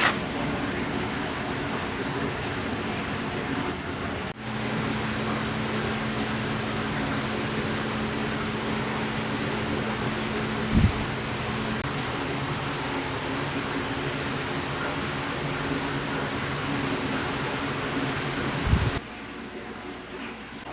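Steady machine noise like a running fan, with a low hum that joins about four seconds in and drops out near the end. Two short low bumps, one near the middle and one near the end.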